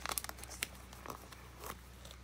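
Faint crinkling and a few light ticks from a plastic binder page as a sleeved trading card is slid back into its pocket.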